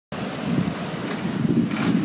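Wind blowing across the microphone: an uneven low rushing noise with no clear tone.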